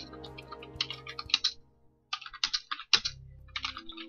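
Typing on a computer keyboard: quick runs of key clicks, with a brief pause about halfway through.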